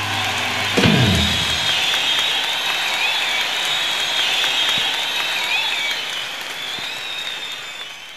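Rock band ending a song live: a low note slides down about a second in, then an arena audience applauds. The sound fades away near the end.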